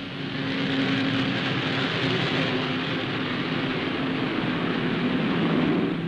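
Avro Vulcan B2 four-jet delta-wing bomber flying over, its jet engines making a steady rushing sound with a faint low hum, swelling in the first second and a little louder near the end.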